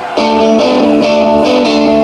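A live band starts a song abruptly just after the start: loud strummed electric guitar chords with a steady beat.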